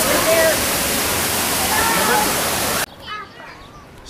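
A steady, loud rushing noise like running water, with faint voices in it. It cuts off abruptly near the end, leaving a much quieter background with a faint voice.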